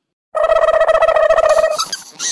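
A single high, steady trilling tone with a fast flutter, held about a second and a half after a brief silence, then fading.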